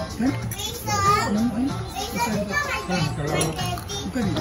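Children's voices over background music, with a high-pitched child's voice about a second in.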